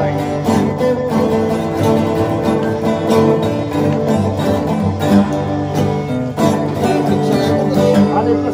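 Several acoustic guitars strumming and picking a tune together as a small string band.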